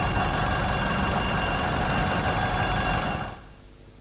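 Electric bell ringing continuously, then cutting off suddenly about three seconds in as the electricity fails.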